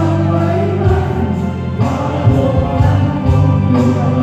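A group of teachers singing a Thai farewell song together over amplified backing music with a strong, steady bass and a few heavy beats.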